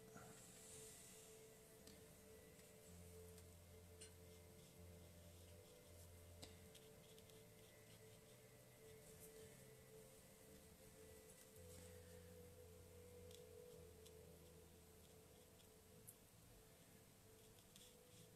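Near silence: room tone with a faint steady hum and a few small ticks.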